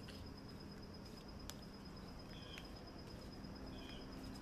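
Quiet outdoor ambience with a steady faint high-pitched whine, a couple of short chirps past the middle and near the end, and a faint click.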